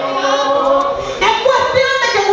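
A woman singing unaccompanied into a handheld microphone, in long held notes.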